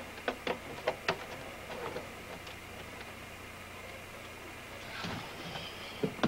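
A few light clicks and knocks in the first second, as a power cable is handled and plugged into the plastic back of a computer monitor. Then a low steady hum, with a short rustle near the end.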